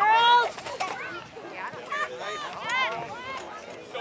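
Shouting voices across a soccer field during play: one loud, high call at the start, then several shorter calls around two to three seconds in.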